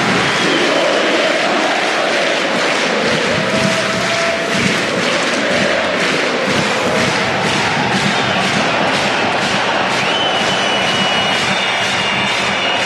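A large arena crowd of hockey fans singing a chant together over a rhythmic pounding beat, about three beats a second. Near the end a thin, steady high tone comes in.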